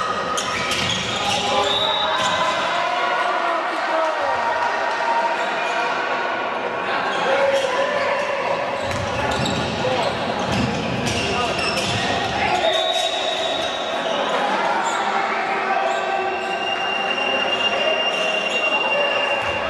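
Handball match play in a sports hall: the ball bouncing on the court amid players' and spectators' voices.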